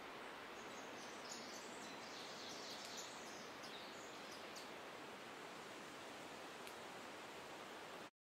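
Faint outdoor ambience: a steady hiss with faint high bird chirps between about one and four and a half seconds in.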